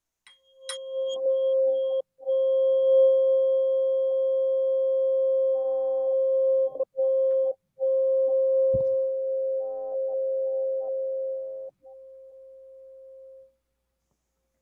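A singing bowl rings: a tap just under a second in, then one steady ringing tone held for about eleven seconds that cuts out briefly a few times. A second, slightly higher tone joins about nine seconds in, then the sound drops to a faint tail that dies away near the end.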